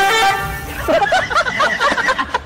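A glass window pane shattering as a cat crashes into it: a sudden loud crash with ringing tones, then about a second later a spell of many small sharp rings as the broken glass falls and scatters.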